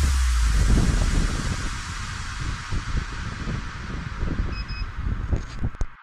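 Wind buffeting an action camera's microphone, with rolling street noise, as an electric unicycle is ridden along a sidewalk. The rumble is heavy for the first second and a half, then eases, and the sound cuts off just before the end.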